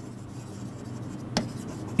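Stylus writing on the face of an interactive touchscreen display, a faint steady scratching with one sharp tap about two-thirds of the way in.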